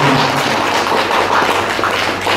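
Audience applauding, a dense round of clapping.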